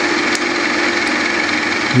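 Milling machine spindle running steadily with a constant hum and hiss, a small homemade gear cutter spinning just clear of a helical gear blank, with a couple of faint ticks.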